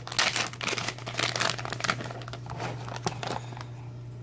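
Soft-plastic lure bag crinkling as it is opened by hand and a crawfish bait is pulled out. The rustling is busiest in the first second or so, then comes in fewer, scattered crackles over a steady low hum.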